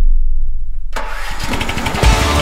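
A Toro TimeCutter zero-turn mower's V-twin engine starting: a click about halfway through, then rapid uneven chugging as it cranks and catches.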